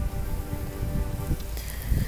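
Irregular low rumbling and bumping on the microphone, the kind made by wind buffeting or handling of a phone, with faint sustained tones underneath.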